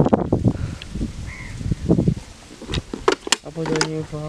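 Low rumbling knocks from a handheld camera being moved about, with a few sharp clicks, then a person's voice holding a long, steady note from near the end.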